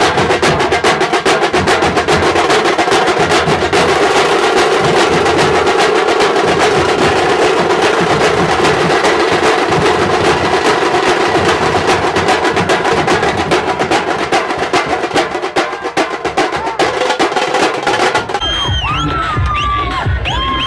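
Dhol drums beaten fast with sticks in a dense, unbroken roll of loud strikes. Near the end it gives way to different music with a high, wavering melody line.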